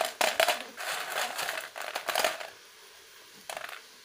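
Freshly fried rice-flour fryums (charodi) crunching and crackling as they are broken and stirred by hand on a steel plate, for about two and a half seconds. A single short click follows near the end.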